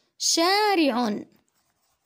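A woman's voice saying one drawn-out word in Arabic, about a second long.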